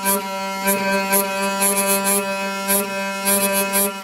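Hurdy-gurdy trompette string droning a steady G as the wheel is cranked, its buzzing bridge rattling in irregular bursts. The tension peg is being backed off after too much tension made it buzz uncontrollably, searching for the point where it buzzes only when wanted. The drone stops abruptly at the end.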